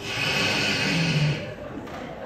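A slurping noise like a drink being sucked up through a straw, lasting about a second and a half, then breaking off.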